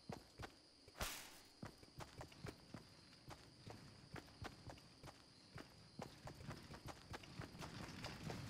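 Faint quick taps, about three a second, with one louder knock about a second in.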